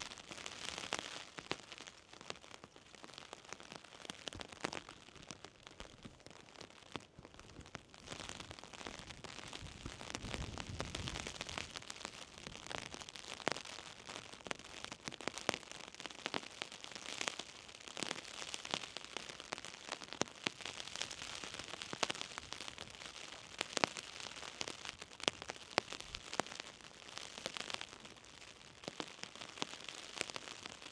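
Light rain falling, a steady hiss with many small, irregular drop clicks hitting close by. There is a brief low rumble about ten seconds in.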